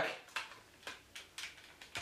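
Hard plastic parts of a large transforming robot toy being handled and lined up: a few soft, separate clicks and taps, about half a second apart.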